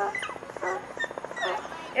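A dog giving several short, high-pitched cries spread across a couple of seconds, each bending in pitch.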